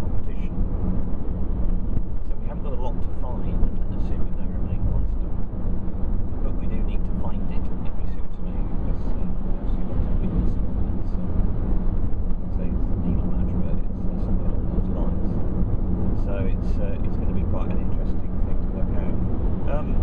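Steady road and engine noise of a car cruising at motorway speed, with a low hum running throughout.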